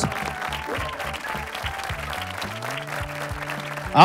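Studio audience applause over a background music bed with steady held low notes.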